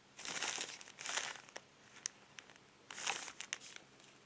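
Clear disposable plastic gloves crinkling as hands turn a 500 ml paper milk carton: three bouts of rustling with a few small clicks between them.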